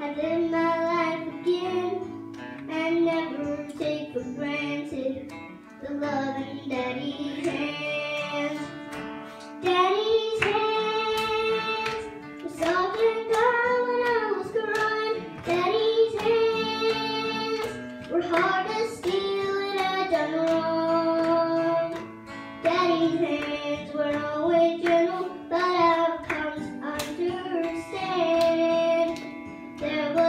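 A young girl singing a gospel song into a microphone with acoustic guitar accompaniment.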